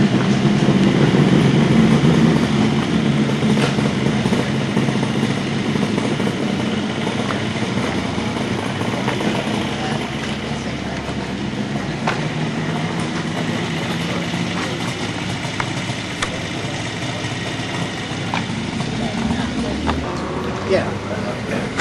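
An engine idling steadily, loudest at first and fading gradually as it recedes.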